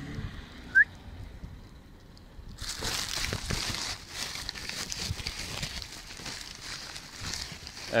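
A brief rising squeak about a second in, then from about two and a half seconds on a steady rustling, crinkling noise.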